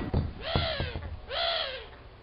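Cartoon bird sound effect: two arching calls, each rising and then falling in pitch.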